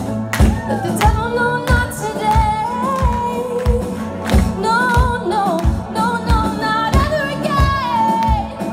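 Live worship band playing: a drum kit keeps a steady beat, its kick drum landing about twice a second, under a singer's held, gliding melodic lines.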